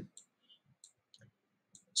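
A few faint, short clicks spaced irregularly through a pause in speech.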